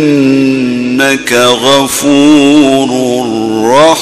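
A man reciting the Quran in the melodic Egyptian tajweed style, drawing out long ornamented notes, with his voice climbing in pitch near the end.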